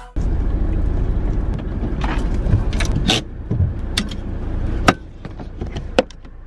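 Steady low rumble inside a car's cabin, with a few sharp clicks and knocks scattered through it; the rumble drops in level about three seconds in and again near the end.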